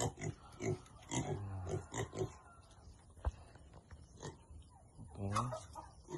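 Domestic pigs grunting: a few short grunts in the first half and another burst near the end, with a single sharp knock about three seconds in.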